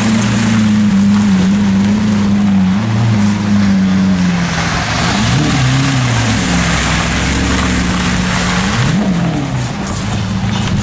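A supercar engine idling steadily. Its note rises briefly in a quick throttle blip about halfway through and again near the end.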